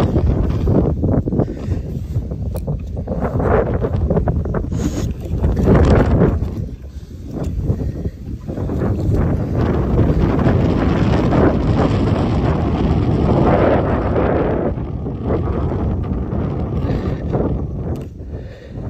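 Wind buffeting the microphone, a loud low rumble that rises and falls in gusts, easing briefly about seven seconds in and again near the end.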